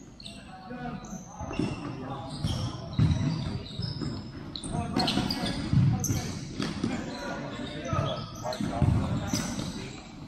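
Futsal ball being kicked and bouncing on a hard indoor court, with shoes squeaking on the floor and players calling out, all echoing in a large hall. The loudest thumps come about three, six and nine seconds in.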